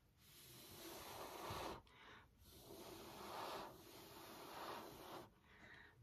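A person blowing by mouth across wet acrylic paint on a canvas to push and spread it (Dutch pour blowing). Two long, faint breaths of air, the first about two seconds and the second about three, with a short pause between.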